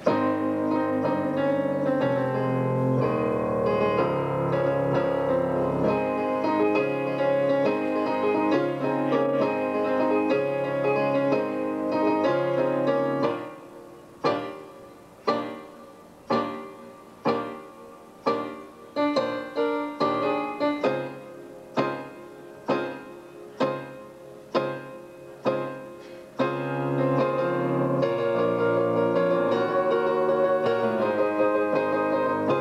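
Electronic keyboard being played: full, sustained chords for the first half, then single chords struck about once a second and left to die away, then full playing again near the end.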